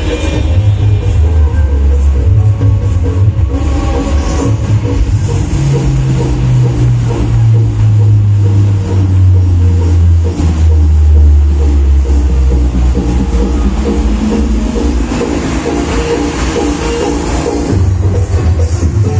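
Loud electronic dance music with a heavy, sustained bass, played through a big mobile sound system on a truck. A long, deep bass note holds through the middle.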